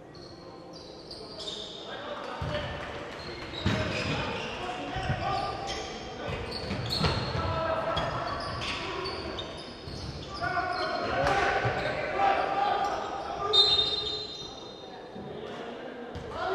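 Basketball being dribbled and bounced on a wooden court in an echoing sports hall, mixed with players' and coaches' shouts.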